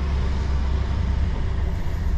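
Lorry's diesel engine running with a steady low rumble, heard from inside the cab as the truck rolls slowly.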